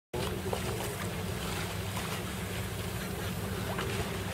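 Steady low rumble with wind and water noise, as heard from a boat under way on open water, with a few faint splashes.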